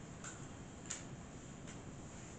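Quiet room tone with three faint, unevenly spaced clicks.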